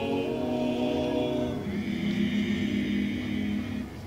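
A five-man Dalmatian klapa singing a cappella in close harmony, holding long sustained chords. The chord changes a little under halfway through and is released just before the end.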